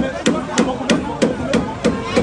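Rapid, regular banging on metal, about three blows a second, each with a short ring, as wreckage is struck.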